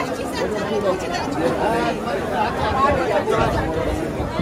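Crowd chatter: many people talking at once, a steady babble of overlapping voices in a packed room.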